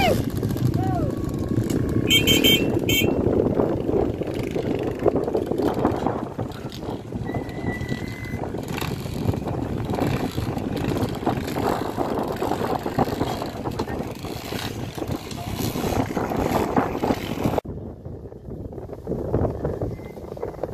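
Dirt bike engines running, heard from a distance, with indistinct voices close by.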